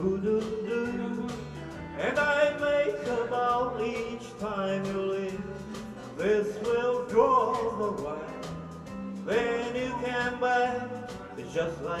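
Country band instrumental break with a steel guitar taking the lead, its notes sliding and bending, over acoustic guitar, electric bass and drums.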